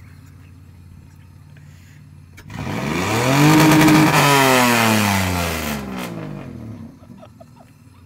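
Pickup truck engine idling, then revving hard about two and a half seconds in as the truck pulls away: the pitch climbs, holds briefly at its loudest, then falls away over the next few seconds.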